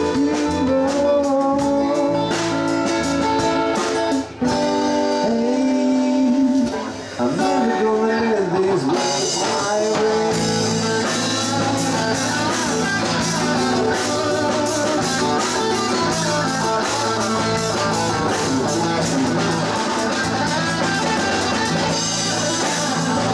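Live rock band playing an instrumental passage: an electric guitar lead with bending notes over bass guitar and drum kit. About ten seconds in, the full band comes in denser and steadier.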